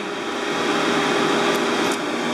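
Dog grooming dryer blowing air in a steady rush with a low hum.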